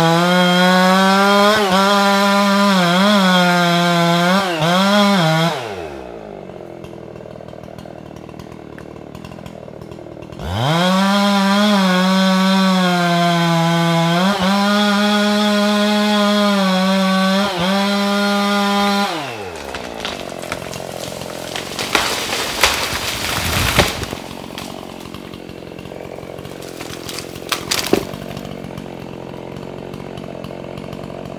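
Husqvarna 375 XP two-stroke chainsaw with a 28-inch bar cutting spruce at full throttle, its pitch dipping under load, then dropping to idle for about five seconds before revving up again for a second long cut. About 19 seconds in it drops back to idle, and a burst of loud cracking and a crash follow as the tree breaks off its hinge and goes over.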